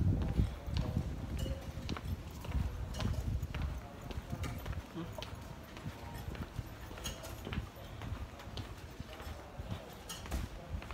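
Footsteps and the knocks and rubbing of a handheld phone while walking, over a low rumble from handling on the microphone. The rumble is strongest in the first few seconds.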